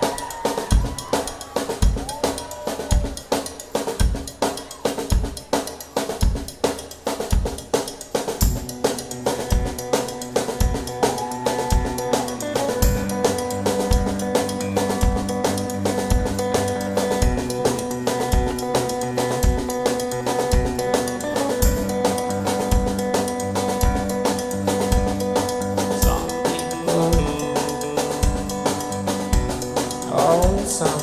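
Live rock band playing an instrumental opening: a steady drum-kit beat with kick and snare, joined by held keyboard notes in the first ten seconds and a low bass line from about twelve seconds in.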